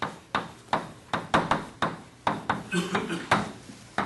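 Chalk writing on a blackboard: about a dozen quick, sharp taps and clicks as the chalk strikes and scratches out letters.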